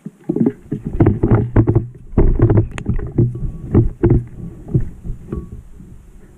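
Dry fallen leaves crunching and a player's clothing and gear rustling close to the microphone as he gets down onto the ground: a dense, irregular run of knocks and scrapes that eases off near the end.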